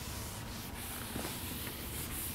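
A cloth wiping a chalkboard, rubbing across the board in repeated swishing strokes.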